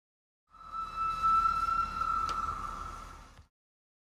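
A single steady high-pitched tone swells in and fades away over about three seconds, with a brief click about halfway through.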